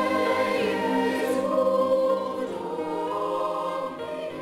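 A choir singing long, held notes in a slow-moving passage.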